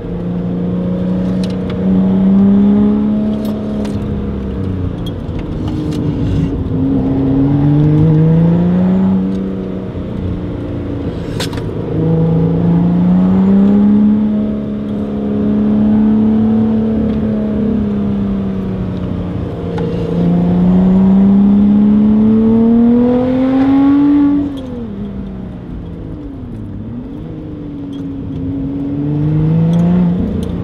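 Sports car engine heard from inside the cabin, repeatedly revving up under acceleration for a few seconds and then falling in pitch as the driver lifts off, with a sharp drop about 24 seconds in.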